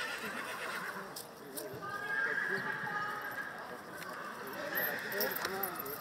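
A horse whinnying: one long call about two seconds in and another near the end, with voices in the background.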